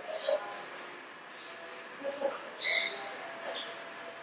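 Background voices and short bird calls, with one brief, loud, high-pitched call about three-quarters of the way through.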